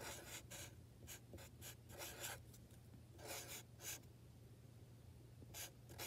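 Felt-tip marker writing on paper: faint, quick scratchy strokes in several short bursts, with brief pauses between them.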